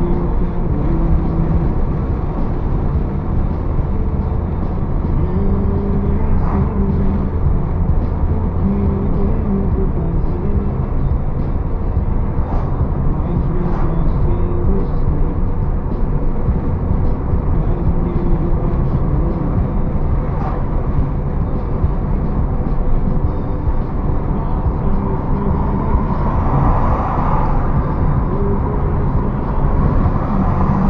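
Car cruising at highway speed, heard from inside the cabin: a steady drone of engine and tyre and road rumble. A rushing noise swells near the end.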